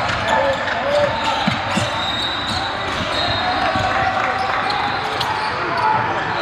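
Basketball game sound in a large gym: a ball bouncing on the hardwood court, with a steady hubbub of players' and spectators' voices echoing through the hall.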